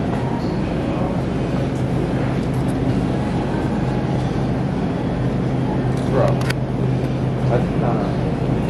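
Steady low hum and noise of a supermarket produce aisle, with faint voices in the background and a couple of brief clicks about six seconds in.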